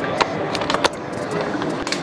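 Handling noise from a handheld camera being swung round: a few sharp clicks and knocks over a steady background hiss.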